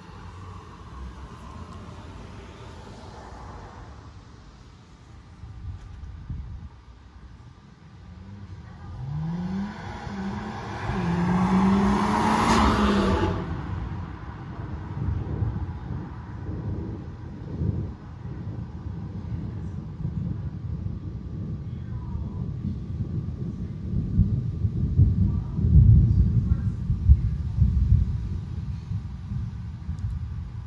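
Low, rolling rumble of distant thunder under a thunderstorm, heaviest about twenty-five seconds in. About ten seconds in, a vehicle accelerates past on the street below, its engine note rising and then levelling.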